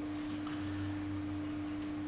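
A steady single-pitch pure tone with a fainter low hum beneath, an electrical tone and hum from the lectern's microphone and amplification.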